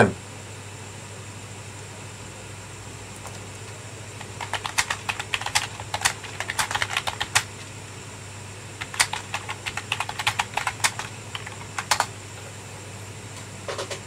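Computer keyboard typing: two runs of quick keystrokes, the first starting about four seconds in and the second about nine seconds in, over a faint steady hum.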